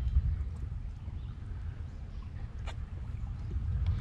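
Uneven low rumble of wind buffeting the action-camera microphone, with a few faint clicks from handling the rod and reel.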